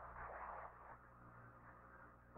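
Near silence: a faint hiss left from the radio channel fades out within the first second, over a faint steady low hum.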